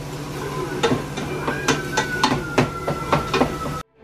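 A spoon knocking and scraping against a pot as food is stirred on the stove, about three clacks a second over a steady low hum. It cuts off abruptly just before the end.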